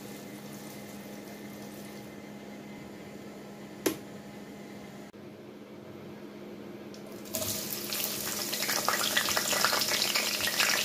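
Sliced onions tipped into hot palm oil in a pot, sizzling and crackling loudly from about seven seconds in. Before that only a low steady hum, broken by a single click.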